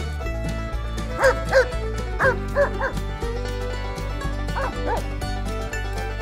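A dog barking in short, high yelps, about seven in all: a quick run of five and then two more a couple of seconds later, over steady background music with a beat.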